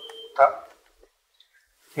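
A male voice chanting a Vietnamese Buddhist verse in praise of the Buddha. A held note fades, a short final syllable sounds about half a second in, and then there is a pause of over a second before the chant resumes at the end.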